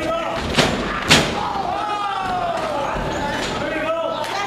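Two sharp slams on a wrestling ring about half a second apart, the second louder, as the wrestlers go down onto the mat, over shouting spectators.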